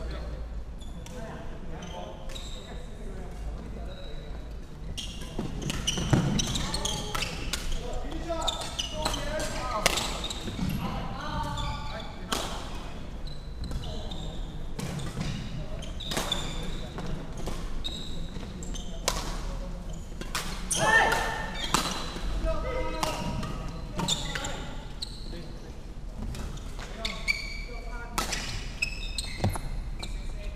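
Badminton play in a large, echoing sports hall: sharp racket strikes on the shuttlecock and footfalls on the wooden court, with players' voices and calls mixed in, loudest about six seconds in and again past twenty seconds.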